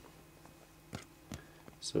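Quiet room tone with two short, faint clicks about a second in, then a voice begins near the end.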